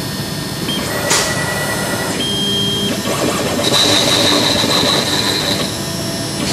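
CNC router cutting a board: the spindle runs with a steady loud noise, while high whines from the axis drive motors switch pitch every second or so as the gantry moves.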